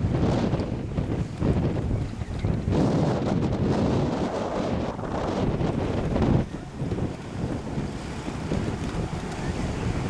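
Wind buffeting the microphone, a low rushing noise that drops somewhat about six and a half seconds in.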